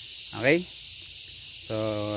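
A steady high-pitched hiss of outdoor background noise, with a man speaking a word about half a second in and again near the end.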